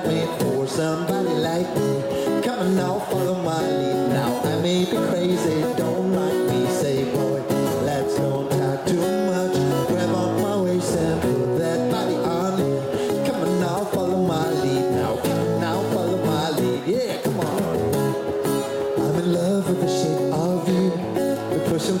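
Acoustic guitar strummed in a steady rhythm, with a voice singing over it.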